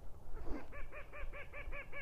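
Waterfowl calling faintly in a rapid, even series of short nasal notes, about seven a second, starting about half a second in.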